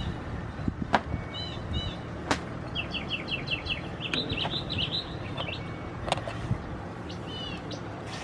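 Small songbirds chirping in short repeated phrases, with a quick run of notes near the middle. A few sharp clicks come through, over a low steady hum.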